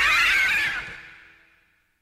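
Electric guitar holding a high note that wavers with wide vibrato, loud for most of the first second, then fading out over about a second.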